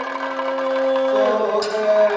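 Kathakali padam singing: a male vocalist holds one long steady note, then the melody moves on a little over a second in. A sharp metallic stroke, typical of the small ilathalam hand cymbals that keep the beat, sounds near the end.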